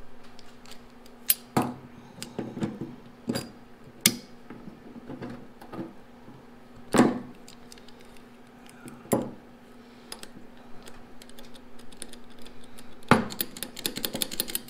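Pliers working a small hose clamp and the fuel hose off the metal fittings on top of a truck's fuel tank: a string of sharp, irregular metal clicks and knocks, with a steady low hum underneath.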